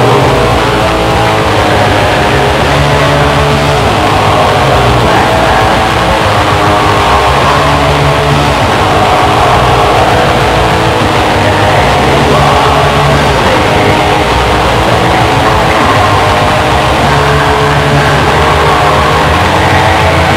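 Black metal recording: distorted electric guitars and bass playing a riff whose low notes change every second or two, over rapid drumming, loud and unbroken throughout.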